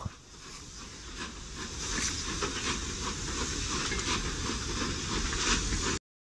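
Railway train running: a steady hiss with a rhythmic clacking about two or three times a second, swelling in the first two seconds and then holding steady.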